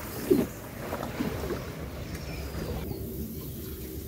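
Quiet outdoor ambience over a wetland: a low steady background with a few faint brief knocks and a thin faint bird call about two seconds in.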